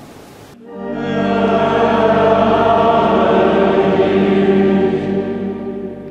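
Church choir singing long held notes. It comes in suddenly about half a second in and fades out near the end.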